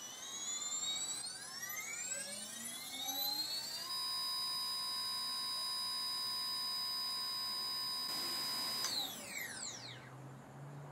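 BrotherHobby R5 2306-2450KV brushless motor spinning unloaded, with no propeller, as its ESC throttle is ramped up during a KV measurement. Its high electronic whine rises in pitch for about four seconds and holds steady, then falls away quickly near the end as the motor spins down.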